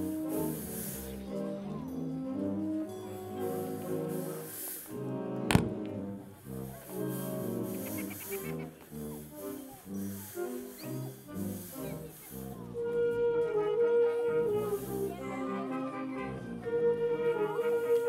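A live wind band playing incidental music, with brass prominent. One sharp hit sounds about five and a half seconds in, and in the second half a brass melody of long held notes rises over the band.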